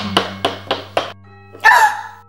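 A quick run of about five knocks, a quarter second apart and growing fainter, over a low steady hum and held music tones. A short pitched sound comes near the end.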